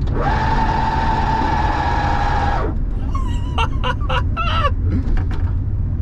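City Transformer CT-1 microcar's width-changing mechanism running as the wheels move outward: a steady high whine that cuts off after about two and a half seconds, over low road rumble.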